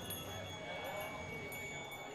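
Small metal pendants hung on a wire in a home-made found-object instrument, ringing like wind chimes: a few high, steady tones fading slowly.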